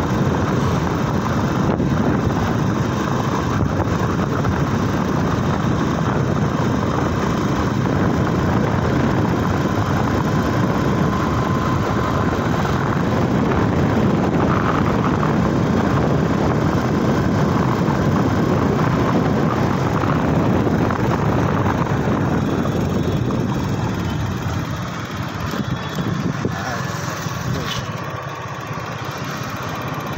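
A motorbike running on the move, with dense rushing road and wind noise and no clear engine note. About 24 seconds in it eases off to a quieter, thinner running sound.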